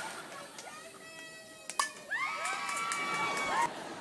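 Phone-recorded sound of a softball game: a sharp knock a little under two seconds in, then several high voices of spectators and players yelling and cheering in long, drawn-out calls.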